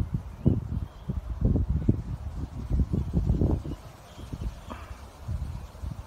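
Wind buffeting the microphone of a handheld phone outdoors: an uneven low rumble in gusts, stronger for the first few seconds and easing off about four seconds in.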